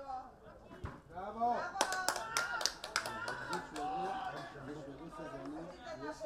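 Men's voices shouting and calling out at a football match, with a quick run of hand claps about two seconds in.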